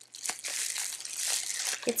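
Packaging crinkling and rustling as it is handled, with a few sharp ticks.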